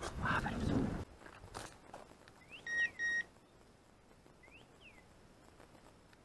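A brief rustle of brush in the first second, then two short, high electronic beeps in quick succession about three seconds in, of the kind a hunting dog's beeper collar gives. Faint sweeping chirps sound around the beeps and again near five seconds.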